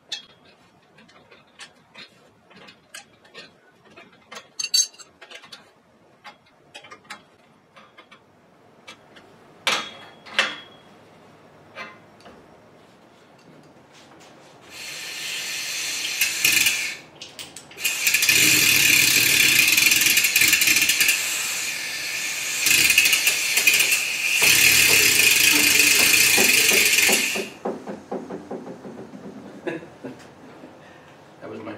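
Light clicks and metal taps from a wrench tightening a pipe clamp. Then, about halfway through, a pneumatic air hoist's air motor runs with a loud hiss for about twelve seconds, broken twice by short pauses, as it lifts an engine block.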